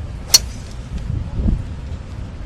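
A 3-wood striking a golf ball on a full swing: one sharp crack about a third of a second in, over low wind rumble on the microphone.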